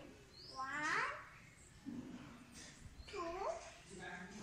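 Two high, gliding meow-like calls, one about a second in and a second, lower one about three seconds in.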